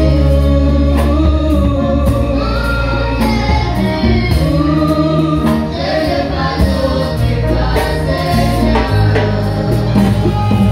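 Live gospel worship music: a young girl sings lead into a microphone with male backing voices, over congas, a drum kit and a guitar, with regular drum hits and sustained low bass notes.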